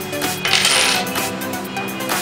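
A padlock key clinking down on a table, a brief bright metallic jingle about half a second in, over electronic background music with a steady beat.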